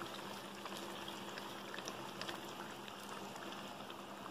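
Egg curry gravy simmering faintly in a steel kadai, a steady low bubbling and sizzle with scattered small pops.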